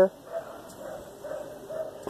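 Several faint, short animal calls over a quiet background.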